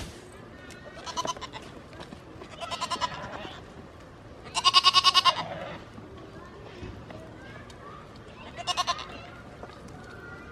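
Goats bleating four times, each bleat quavering, with the loudest and longest about halfway through and a short one near the end.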